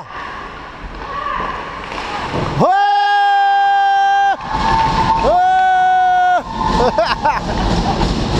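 Two long horn blasts, each a steady tone with a short rising start, marking a goal: the first about two and a half seconds in and nearly two seconds long, the second a little over a second. Voices shout and cheer around them.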